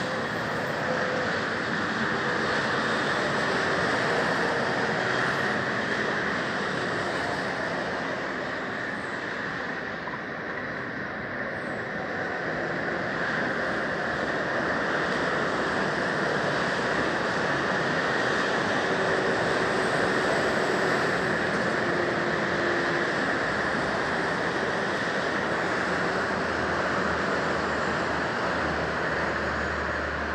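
Steady motorway traffic noise from cars and lorries passing, easing slightly about ten seconds in and then building again.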